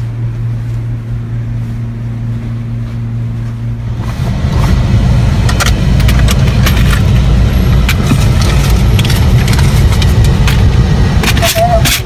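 A steady low hum for the first few seconds. About four seconds in it gives way to the louder low rumble of a car idling, heard from inside the cabin, with scattered clicks and knocks of handling.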